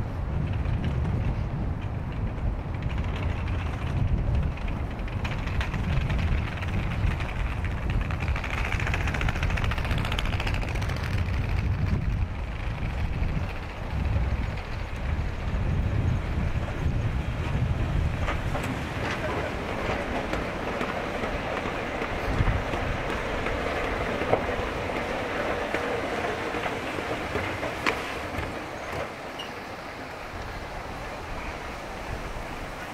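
Outdoor city ambience: a continuous, uneven low rumble typical of wind on the microphone and road traffic, with a wider haze of distant traffic and voices growing in the second half.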